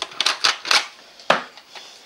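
A run of sharp plastic clicks and clacks at irregular intervals, the loudest a little over a second in: a VHS cassette being handled at a video player.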